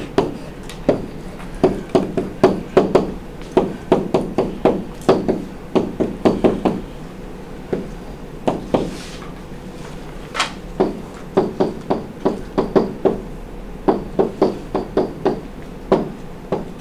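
Stylus tapping and clicking on a tablet screen while handwriting: irregular sharp clicks a few per second, with a pause of about two seconds just past the middle.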